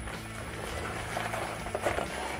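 Electric motor driving a manual gearbox in first gear on a slowly rolling homemade Cybertruck replica, a low steady hum, with the gearbox working as a reduction gear.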